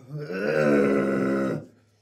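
A man's single drawn-out groan, about a second and a half long, as he gags on a mouthful of food.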